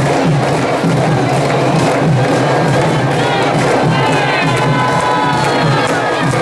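Candombe drums (tambores) of a comparsa playing a steady parade rhythm under a cheering, shouting crowd. From about halfway in, sustained voices cry out over the drumming.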